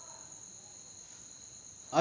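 A pause in speech with a faint, steady high-pitched whine: two unbroken thin tones over low background hiss.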